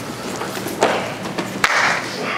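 Bare feet shuffling and thudding on foam grappling mats as a group of people moves about, with two sharper thumps, one just under a second in and one near the end.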